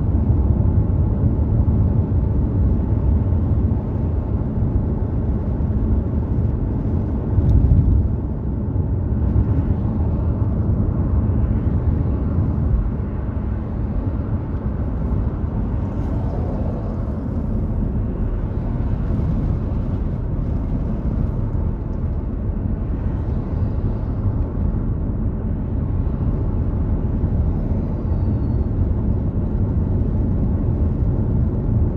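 Road noise inside a moving car's cabin: a steady low rumble of tyres and engine, with a brief louder surge about seven and a half seconds in.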